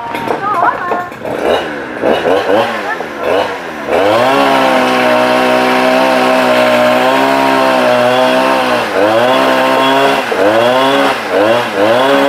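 Two-stroke chainsaw revving in short bursts, then held at high revs for about five seconds, dropping back and revving up again several times near the end.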